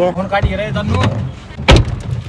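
A voice for about the first second, then a single heavy thump near the end, a car door shutting.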